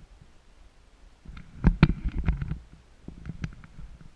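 Knocks and clicks of handling close to the microphone over a low rumble: a cluster of them about a second and a half in and a few weaker ones near the end.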